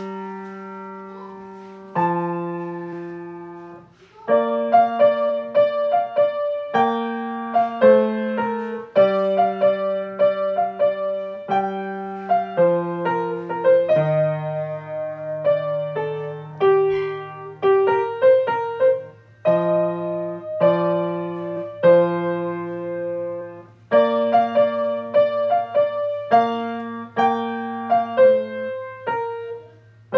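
Solo grand piano played at a slow pace: struck chords and melody notes that ring on and fade, over held bass notes, with a brief gap about four seconds in.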